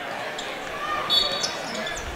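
A referee's whistle blown once, about a second in: a short, shrill, steady blast calling a hand-check foul. A gym crowd murmurs throughout.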